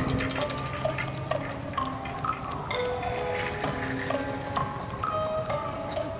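Music from an outdoor show soundtrack: short held and plucked notes stepping between pitches over a rapid ticking, clicking texture.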